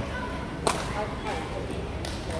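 A badminton racket striking a shuttlecock: one sharp crack about two-thirds of a second in.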